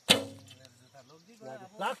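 A bow shot: the string is released with one sharp, loud snap, followed by a humming ring from the string and limbs that fades over about a second. A voice calls out near the end.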